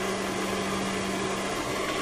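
Steady, even hiss with a constant low hum underneath.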